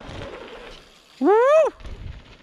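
An excited "woohoo" whoop, one call rising then falling in pitch, about a second in, cheering a mountain biker's dirt jump. A faint noise dies away before it.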